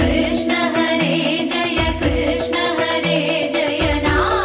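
Instrumental passage of a Tamil Krishna devotional song, with sustained melodic notes over a steady percussion beat and a low thump about once a second.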